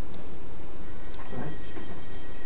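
Steady low background rumble with a faint high steady tone, under a pause in a man's talk; he says a brief "Right?" a little past the middle.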